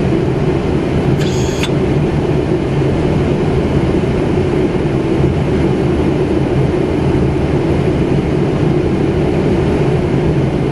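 Steady rushing noise on the flight deck of a Boeing 777-300ER in flight on approach. A short, high-pitched tone sounds once about a second in.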